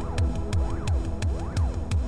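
Early-1990s hardcore techno: a fast, steady drum-machine kick with crisp ticks on the beat, under a synth line that glides up and down in pitch over and over.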